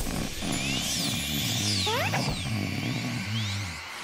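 A cartoon bunny's low, wavering, contented humming vocalisation, over light whimsical music with high sparkling swoops and a rising glide about halfway through.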